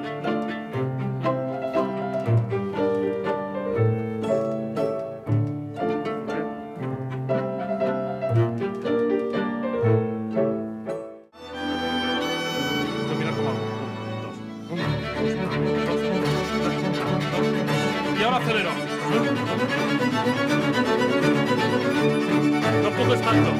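Small string orchestra (violins, violas, cellos and basses) playing a steady-tempo passage under a conductor. The playing breaks off briefly about halfway through, then starts again and grows fuller a few seconds later.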